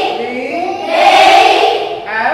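A class of young students chanting English letter names aloud in unison, drilling the alphabet in chorus. One group call swells about halfway through.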